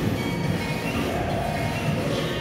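Weighted sled of a Cybex plate-loaded leg press running along its rails as it is lowered, over background music.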